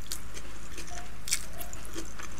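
Close-miked mouth sounds of chewing a mouthful of chow mein noodles: wet chewing with small clicks and lip smacks, the sharpest smack about a second and a half in.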